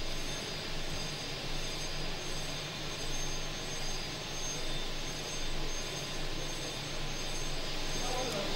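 The Senate chamber's bell ringing steadily without a break, signalling that the sitting is about to begin.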